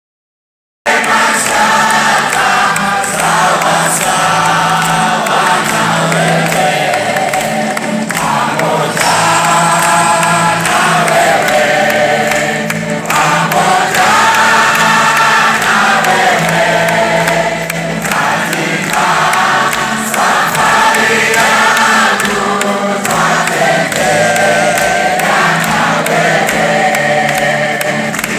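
A large choir singing a gospel worship song over steady instrumental accompaniment, starting about a second in.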